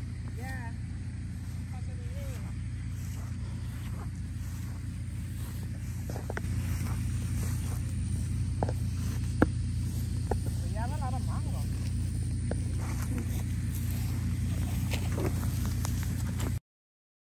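Steady low rumble of wind on the microphone while walking outdoors, growing louder about six seconds in. Faint brief voices can be heard near the start and again about eleven seconds in. Scattered small clicks occur, with one sharp click about nine and a half seconds in.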